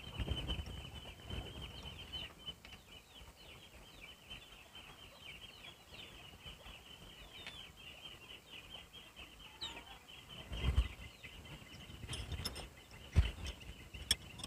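Faint, steady chirping of birds: a rapid stream of short high calls, several a second. A few low thumps come at the start and again about ten and thirteen seconds in.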